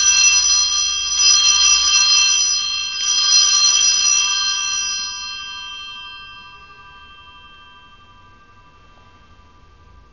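Altar bells rung at the elevation of the host during the consecration: bright, high ringing tones, struck again a couple of times in the first few seconds, then fading away slowly.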